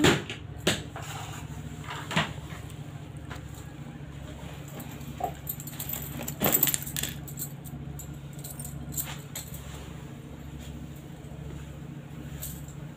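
Household things being handled on a floor: a few short knocks and rustles over a steady low hum.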